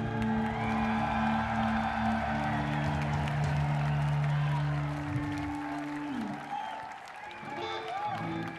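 A rock band's electric guitars and bass ringing out a held final chord that ends a live song, the low note sliding down about six seconds in as the chord breaks off. The crowd cheers and applauds as the music dies away.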